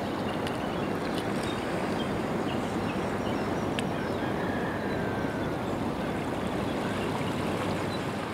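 Steady rushing water ambience, with faint scattered clicks and a few brief high chirps over it.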